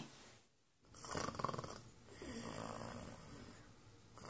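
Elderly woman snoring in her sleep: a short, rattling snore about a second in, then a longer, softer one.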